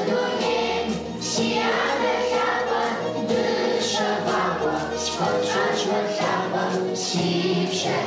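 A children's choir singing together, the voices holding notes and moving from pitch to pitch without pause.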